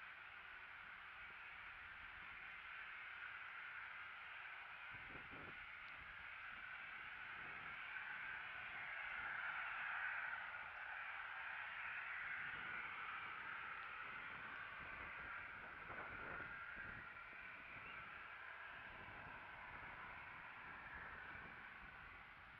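Faint outdoor ambience: a steady hiss that swells a little around the middle, with a few soft low thuds.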